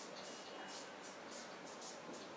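Marker pen writing on a whiteboard: a quick run of short, faint squeaky strokes as numbers are written.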